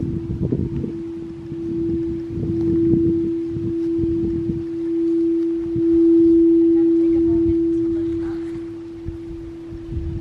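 Crystal singing bowl being sung with a mallet: one steady, pure tone that swells and eases, loudest a little past the middle. A low rumble of wind and handling noise sits under it in the first few seconds.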